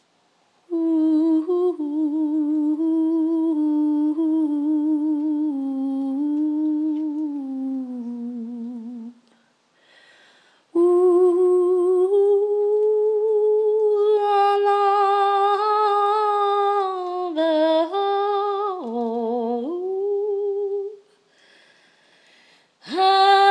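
A woman humming a wordless melody with no accompaniment, her voice wavering in vibrato. She hums two long phrases: the first steps down in pitch and ends about nine seconds in; the second starts a moment later, holds higher and dips near the end.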